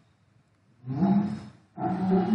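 A man's voice: near silence at first, then a drawn-out vocal sound held at a steady pitch about a second in. Speech starts near the end.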